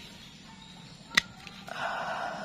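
A single sharp snip of hand pruning shears cutting a sancang bonsai root, about a second in, followed by a brief rustle near the end.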